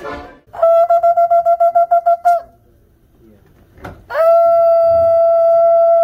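A ram's-horn shofar being blown: first a quick run of about ten short staccato notes, then after a pause one long, steady note at the same pitch.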